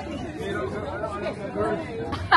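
Indistinct chatter of people talking, with no words clear and no voice close to the microphone.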